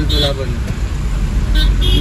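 Low, steady engine and road rumble inside a moving car's cabin.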